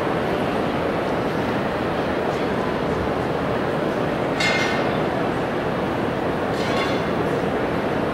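Steady, fairly loud background din of a large exhibition hall, with two faint short sounds midway.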